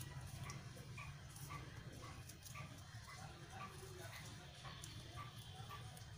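Faint, short, high animal calls, about two a second, over a low steady hum, with light crinkling of paper being folded.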